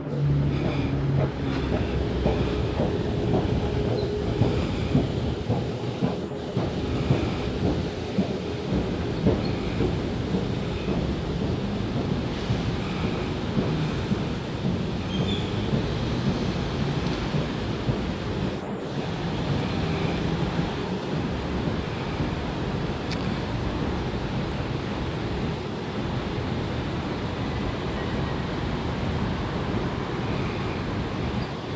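Steady low rumble of a long escalator running downward, heard while riding it, with a crackly rustling texture over it.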